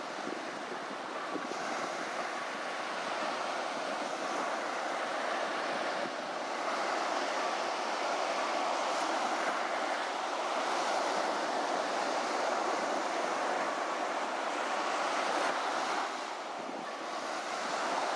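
Steady rush of ocean surf breaking on a beach, with wind.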